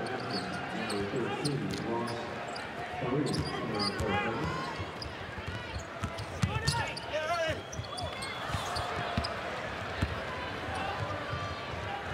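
Basketball dribbled on a hardwood court, with sneakers squeaking in short high chirps over the murmur of an arena crowd.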